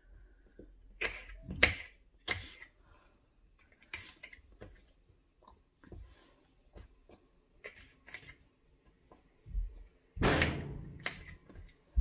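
Scattered clicks and knocks of a knife cutting a jalapeño on a countertop and of pieces being dropped into a plastic blender cup. A louder, longer clatter comes about ten seconds in.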